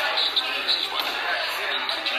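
Chatter of many voices, too blurred to make out, with a few short knocks of cornhole bags landing on the boards.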